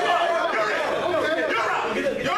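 Several men's voices talking at once, overlapping and indistinct, echoing in a large room.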